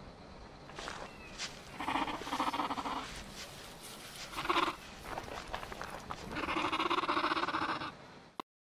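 Dinosaur calls from a film soundtrack, pitched and pulsing: one about two seconds in, a short one in the middle and a long one near the end.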